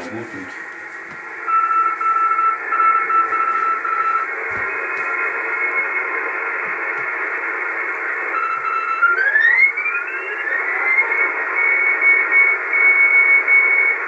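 Amateur shortwave receiver tuned to the 160-metre band: Morse code stations come through as keyed tones over a steady hiss of band noise, with the noise interference held down. About two-thirds through, the tones slide upward in pitch as the receiver is retuned, and another station keys a higher tone near the end.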